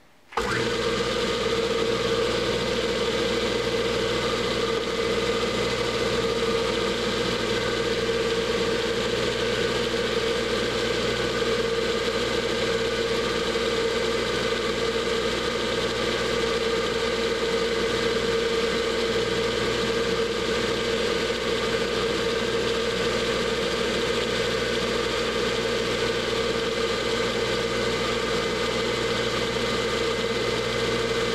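Small metal lathe's electric motor and belt-driven spindle switched on about half a second in, then running steadily with a hum, while a twist drill held in the tool post is fed into a spinning hot-rolled steel bar.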